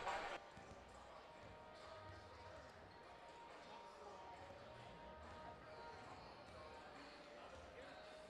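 A louder sound cuts off just after the start, leaving faint gymnasium ambience: low crowd chatter with basketballs bouncing on the hardwood court.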